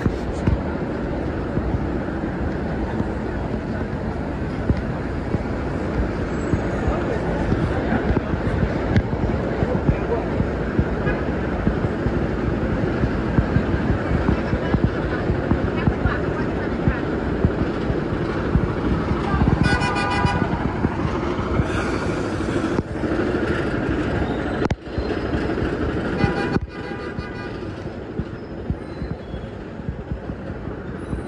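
Busy city street ambience: steady traffic noise and passers-by talking. A vehicle horn sounds for about a second two-thirds of the way through, and a fainter horn follows a few seconds later.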